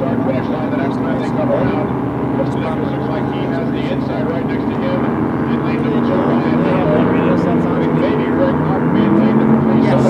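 Engines of Grand Prix class inboard racing hydroplanes droning across the lake as the boats run the course: a steady, layered drone from several boats that swells a little near the end.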